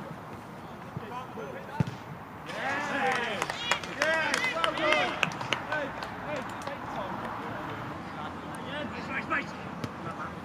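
Several men's voices shouting and cheering as a goal goes in, loudest a couple of seconds after it and then dying down. Just before the shouting, there is a single sharp thud of a football being struck.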